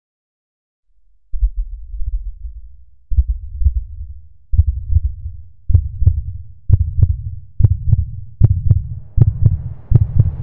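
A deep, low thudding sound effect that pulses like a heartbeat. It starts after about a second of silence and speeds up from one beat every couple of seconds to more than one a second. From about halfway on, each beat carries a sharp click.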